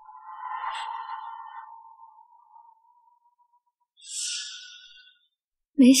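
Two short sound effects dropped into a dramatic pause. First a mid-pitched swell that starts at once and fades out over about three seconds, then about four seconds in a brief high, hissy shimmer that dies away within a second.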